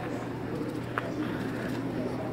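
Busy indoor market ambience: a steady low hum under faint, distant crowd voices, with one short clack about a second in.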